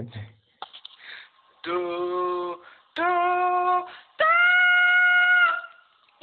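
A woman's voice note played back through a phone, singing three separate held notes that step up in pitch, the last the highest and held longest. The sound is thin, phone-recording quality.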